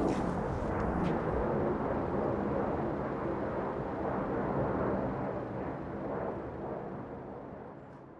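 Twin-engine jet airliner passing overhead: a loud, steady rumble of engine noise that slowly fades toward the end.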